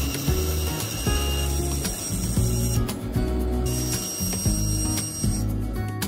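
Bandsaw running and cutting through a wooden board, heard under background music. The saw's high hiss drops out for about a second near the middle.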